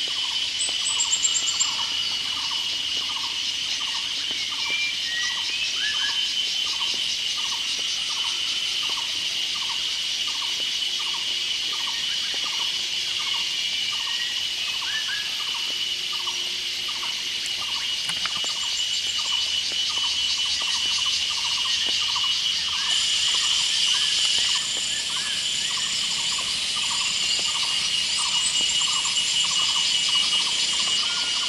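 Forest insects, such as crickets or cicadas, shrilling steadily at a high pitch, with a lower note repeated evenly about one and a half times a second throughout and a few faint chirps.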